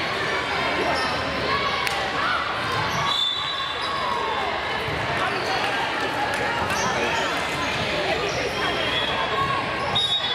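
Echoing gymnasium hubbub: many overlapping voices from players and spectators, with occasional ball bounces and thuds on a hardwood floor.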